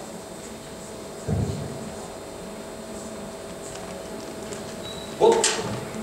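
Low, steady hall room tone. There is a dull low thump about a second in, and a brief voice sound near the end.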